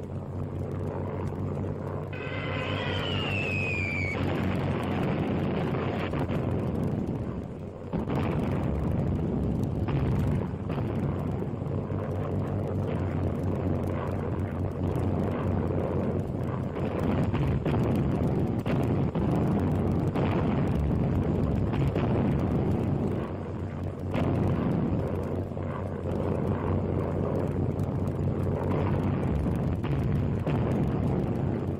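Wartime aircraft engines droning steadily under a heavy rumble. A falling whistle about two seconds in is followed by repeated explosions as bombs burst around ships at sea.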